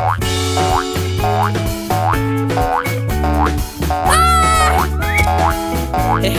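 Bouncy children's cartoon background music: a steady bass line under short rising sliding notes that repeat about twice a second, with a brief wavering high tone about four seconds in.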